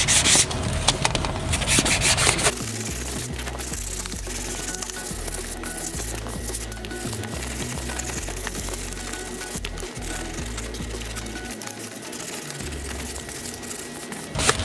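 Hand sanding with a 220-grit sanding block on a primed wood-veneer trim panel: rapid back-and-forth rubbing strokes, loudest for the first couple of seconds, then lighter, quieter rubbing. The dried isolating primer is being scuffed to key it for the filler primer.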